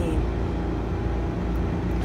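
A steady low background rumble with a faint constant hum, unchanging throughout.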